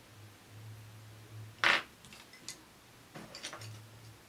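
Drawing tools being handled while switching from one pencil to another: one short, loud rustle about halfway through, followed by a few light clicks of pencils being set down and picked up.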